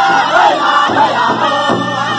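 Powwow drum group singing together in high, strained voices around a large hide drum, with soft drum strokes about a second in and again near the end.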